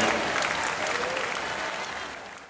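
Crowd applauding, a dense patter of claps that fades steadily away.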